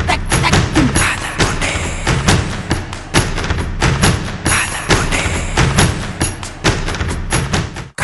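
Music with a fast percussive beat, dense with knocks and thuds, cut off suddenly at the end.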